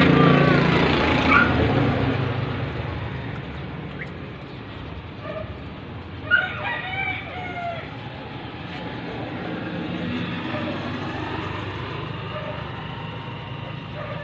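A rooster crows once about six seconds in: a sharp start, then a long falling call of about a second and a half. Before it, a passing vehicle fades away over the first few seconds.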